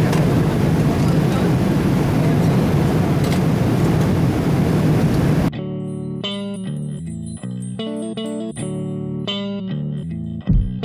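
Steady in-flight cabin noise of a Boeing 777-300 airliner, an even low rushing sound. About five and a half seconds in, it cuts off suddenly to background music with plucked guitar and bass.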